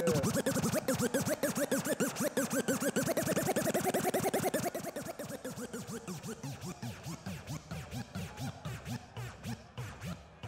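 A DJ scratching on the decks over music: quick back-and-forth strokes that sweep up and down in pitch, getting quieter about five seconds in.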